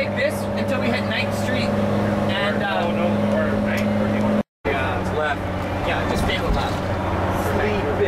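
Bus engine and road noise droning steadily inside the cabin while cruising at highway speed, with a brief break about halfway through.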